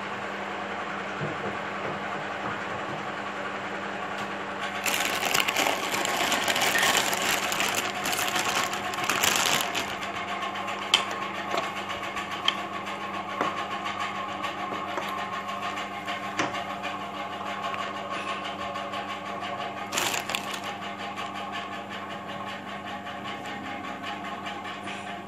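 Maggi noodles cooking in a watery tomato masala in a black nonstick pan, stirred with a plastic spatula. There is a spell of hissing and scraping about five to ten seconds in and a few sharp taps, over a steady mechanical hum.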